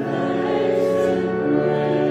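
Slow choral music: voices holding long, sustained chords that shift to a new chord about three-quarters of the way through.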